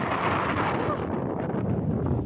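Strong wind buffeting the microphone: a steady rushing noise.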